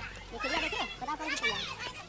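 Children's high-pitched voices calling out twice, with no clear words.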